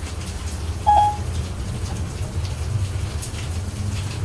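Steady hiss of rain over a low hum, with one short electronic beep about a second in: the iPad's Siri tone as it takes the spoken request.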